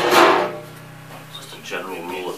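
A metal lid set down on a large metal stockpot, one clank right at the start that rings and fades within about half a second, over a steady low hum. Near the end, faint music comes in.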